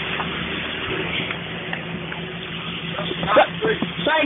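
Jeep Cherokee XJ engine running at low, steady revs while the Jeep crawls over rocks in a shallow creek. A person's voice is heard briefly a little over three seconds in and is the loudest sound.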